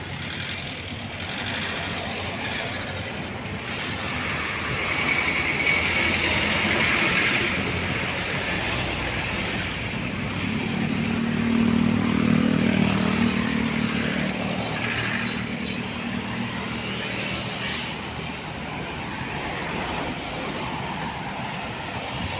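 Road traffic going by, with one vehicle's engine growing louder and passing close about eleven to thirteen seconds in.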